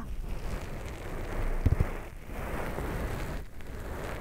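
ASMR wet-tissue ear wiping: a wet tissue rubs over the ear of a binaural dummy-head microphone, giving a dense, steady rustling, with a couple of low bumps a little under two seconds in.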